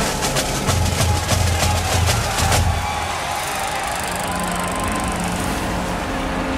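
Film score snare drum playing a rapid, steady march beat over low drum hits, stopping about two and a half seconds in. A steadier low background hum follows.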